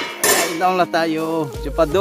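A steel slotted ladle and steel pan clattering against each other over a cooking pot, metal on metal, loudest in the first half-second.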